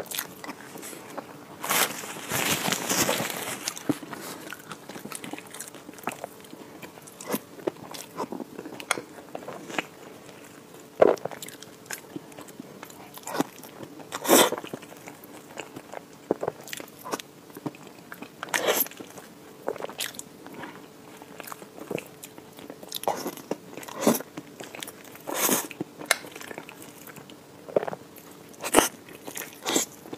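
Close-miked eating of a soft, creamy layered dessert with cookie crumbs: wet chewing and mouth sounds broken by sharp clicks at irregular intervals, with a louder stretch of a second or two near the start.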